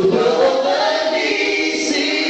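Church congregation singing a gospel praise song together, led by a male worship leader on a microphone. A voice slides up into a long held note near the start.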